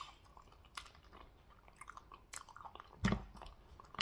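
Close-miked chewing of goat head meat: wet, sticky mouth clicks and smacks at irregular intervals, with the loudest smack about three seconds in.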